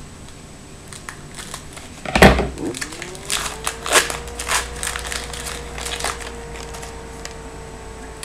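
A foil trading-card pack being cut open with scissors and peeled apart by hand: a knock about two seconds in, then a run of crinkles and crackles from the wrapper.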